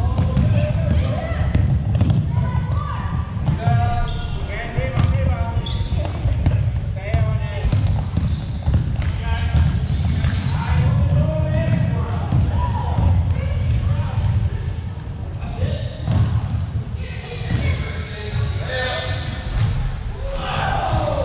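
Basketball bouncing on a hardwood gym floor during a game, with players' and spectators' voices shouting and echoing in the large hall.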